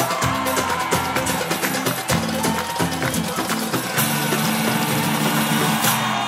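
Live band playing an instrumental dance break of a pop song: a fast percussion beat over a stepping bass line, giving way about four seconds in to a held chord.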